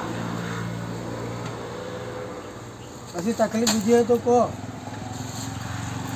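A steady low hum runs throughout, with a person's voice speaking briefly about three seconds in.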